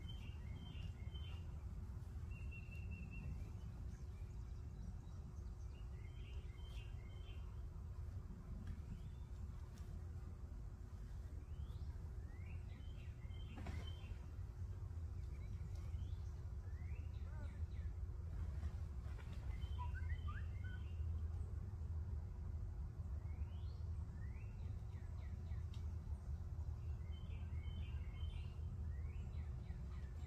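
Outdoor ambience: a steady low rumble, with a bird repeating a short, high phrase about every six or seven seconds and other birds chirping between. One faint click about halfway through.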